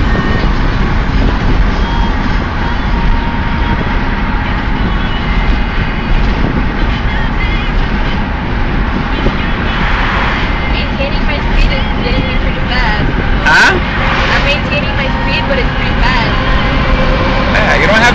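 Steady in-cabin road, wind and engine noise of a Smart fortwo driving at highway speed, with a brief sharp click or knock about thirteen seconds in.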